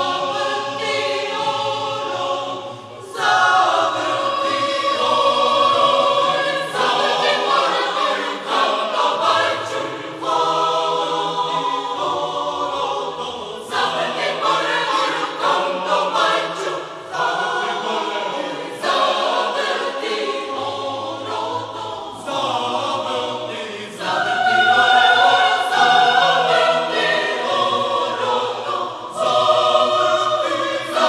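Choir singing a choral arrangement of a Serbian oro (round dance). The singing swells louder about three seconds in and again near the end.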